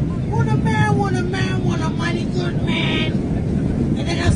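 Subway train running with a steady low rumble under a woman's raised, talking voice, with a brief higher-pitched sound about three seconds in.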